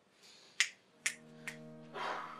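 Three sharp clicks about half a second apart, the first the loudest, and from about a second in, film soundtrack music holding a steady chord.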